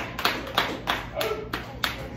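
Scattered applause from a small audience: about eight separate, irregularly spaced hand claps.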